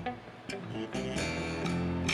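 A 10-string Warwick Streamer bass and an electric guitar playing together through amplifiers. The notes thin out briefly about a quarter second in, then ring on, held, from about a second in.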